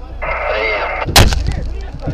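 Shouting, then a single sharp, loud bang a little past a second in.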